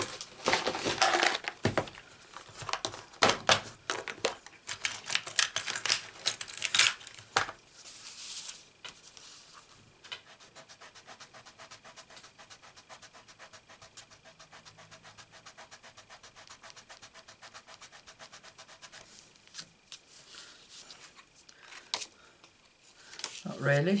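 Sharp clicks and knocks of objects being handled on a craft desk. Then, from about eight seconds in, a rubber eraser is scrubbed back and forth on card stock in fast, even strokes for roughly ten seconds, rubbing out a stray stamped ink mark.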